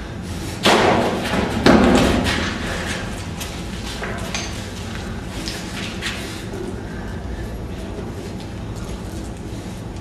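Two heavy thumps about a second apart, each dying away over half a second, followed by scattered lighter knocks and clatter.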